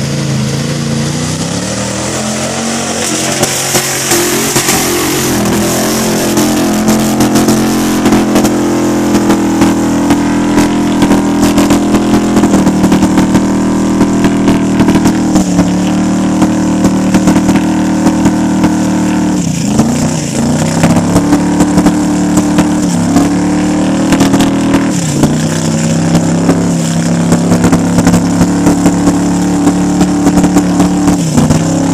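A Jeep's engine at high revs as it churns through deep mud, its pitch climbing at the start and held there. It dips twice past the middle and climbs straight back up. Many short sharp cracks and slaps sound over the engine.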